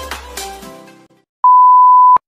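Dance music fading out over the first second, then after a brief silence a loud, steady beep held at one pitch: the reference test tone that goes with TV colour bars.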